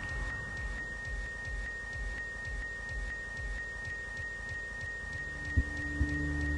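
A steady, high-pitched electronic tone, held unbroken, over a faint low rumble. Near the end there is a thump and low musical tones come in.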